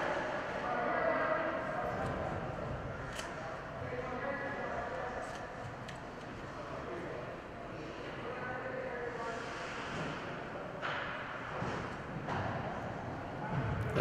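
Indoor ice rink ambience during a stoppage in play: faint, indistinct voices and calls from players and officials over a steady hum of the arena, with a few sharp clicks, such as sticks on the ice.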